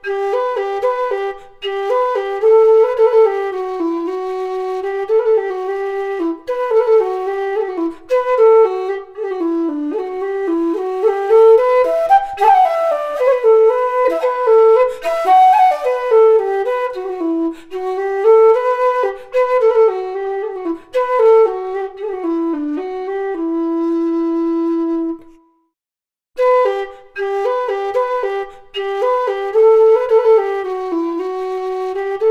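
Low whistle playing an unaccompanied melody, one line of quick notes broken by short ornaments such as cuts and trills. Near the end it holds one long low note, stops briefly, then the tune starts again.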